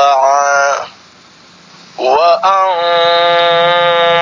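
Male voice reciting Quranic Arabic word by word in a drawn-out chanting style, playing from an Iqro reading app. It holds one long syllable that stops about a second in, pauses for about a second, then holds another long syllable.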